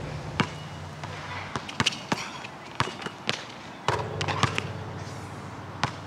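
A basketball bouncing on an outdoor hard court: sharp, irregularly spaced bounces after a dunk, with a louder knock just before four seconds. A low steady hum sounds under the first couple of seconds and again from that louder knock on.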